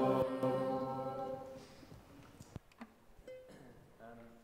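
A church congregation singing the last held note of a worship song, which dies away about a second and a half in. Near-quiet follows, with a few small knocks.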